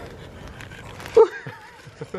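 A short, loud voice-like cry about a second in, followed by a brief wavering call.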